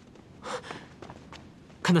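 A man's short, breathy startled gasp about half a second in.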